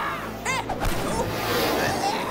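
Cartoon soundtrack: background music with sound effects, a brief high-pitched cry about half a second in and a sharp hit just under a second in.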